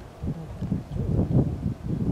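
Indistinct voices of people talking, over a low rumble of wind on the microphone.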